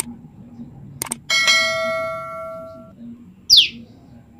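A click sound effect and then a bell-like ding that rings and fades over about a second and a half: the sound of an on-screen subscribe-button animation. Then, near the end, one short, sharp, downward-slurred call from a female common tailorbird.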